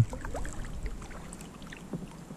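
Quiet kayak sounds on the creek: faint water movement around the hull over a steady low wind rumble on the microphone, with a few small clicks and knocks.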